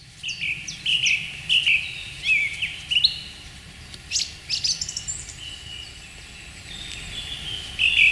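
Several small songbirds singing in the countryside: a busy run of short chirps and quick whistled notes, some rising and some falling, continuing throughout.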